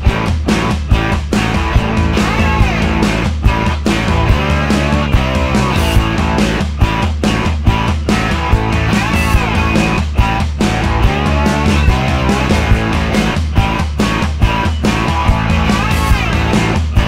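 Loud live pop performance over a PA system: a man singing into a handheld microphone over a backing track with a steady beat about twice a second.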